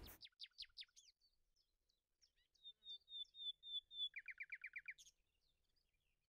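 Faint songbird calls: a few quick falling chirps at the start, then a run of short repeated high notes and a quick series of falling notes that stops about five seconds in.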